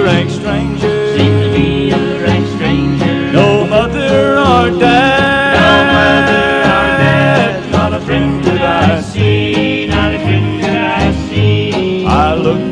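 Slow country gospel song played on acoustic guitar and steel guitar, the steel sliding into long held notes in the middle.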